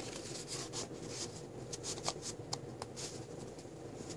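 Paper rustling and light scraping as a cardstock tag is handled and slid back into a paper pocket of a scrapbook mini album, with many small irregular ticks.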